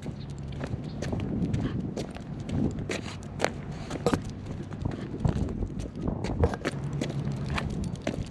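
A miniature schnauzer's paws and claws clicking irregularly on stone paving as it trots, heard close up.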